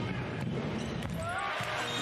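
Handball penalty throw: two sharp thuds about half a second apart as the ball is shot and strikes the goal, over steady arena crowd noise.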